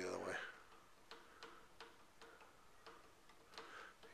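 Faint, irregular clicks of TV remote control buttons being pressed while changing channels, about eight presses over three seconds.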